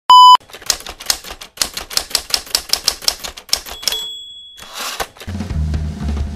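A brief loud beep, then a typewriter sound effect: rapid keystrokes clattering for about three seconds, a bell ding, and the swish and clunk of the carriage return. Music with a steady bass line starts near the end.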